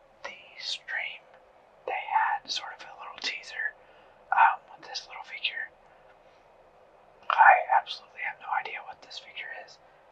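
A person talking in a whisper, in short phrases with a couple of pauses.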